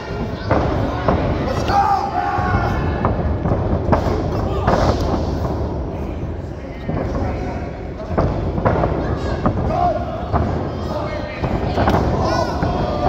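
Thuds of wrestlers' bodies hitting the canvas of a wrestling ring, several times, the loudest about four seconds in, amid indistinct shouting voices.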